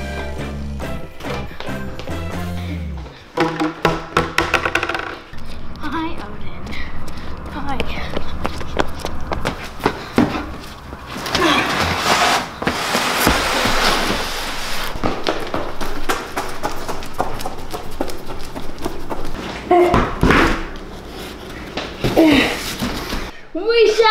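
Background music playing throughout, over occasional thunks and knocks of large cardboard boxes being handled.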